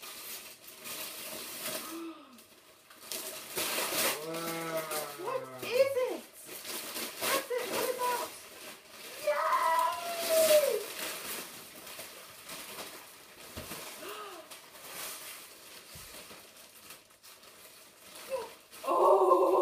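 Wrapping paper crinkling and tearing as a large present is unwrapped, in irregular bursts. Short wordless vocal sounds break in a few seconds in and again about ten seconds in.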